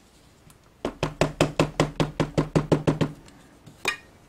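Ink pad tapped against a rubber stamp mounted on a clear acrylic block: a quick, even run of about a dozen taps, roughly six a second, then one more tap near the end.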